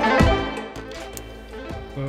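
Background music, loud at first and dropping in level about half a second in.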